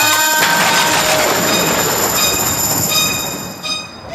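A woman's sung note ends about half a second in, followed by a loud rushing sound effect through the stage sound system, with steady high whistling tones, that fades out near the end.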